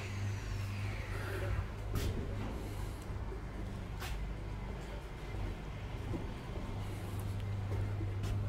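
A steady low mechanical hum, as of a motor or engine running, with a couple of faint knocks.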